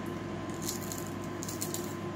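Faint crackling crunches, in two short spells, of a dried diving beetle's hard shell being bitten between the teeth, over the steady hum of an air conditioner.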